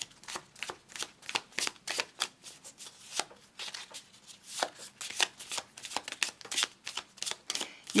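A deck of tarot cards shuffled by hand, the cards slapping and sliding against each other in quick, irregular clicks, several a second.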